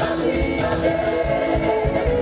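Gospel music performed live: singing with a backing choir over a band with bass guitar.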